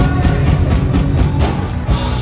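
Live rock band playing, with drum-kit hits repeating over electric guitar.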